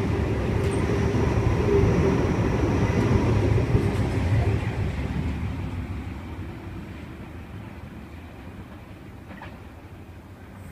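Sydney Trains Waratah electric train passing a platform: a steady running rumble with a thin high whine. It fades away over the second half as the train pulls off into the distance.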